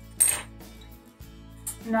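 A single sharp clink of a small hard craft tool knocked or set down on a wooden table, about a quarter second in, over soft background music.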